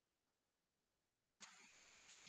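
Near silence: faint room tone, broken near the end by a faint burst of noise that starts suddenly and carries on.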